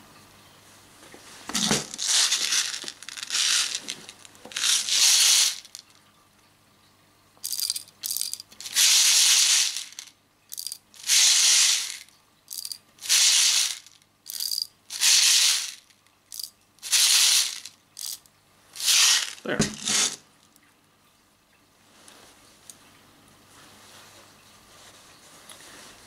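Steel 4.5 mm BBs shaken from their bottle rattle into the magazine of an Umarex P08 Luger CO2 BB pistol. They go in about a dozen short bursts a second or two apart, ending about three-quarters of the way through.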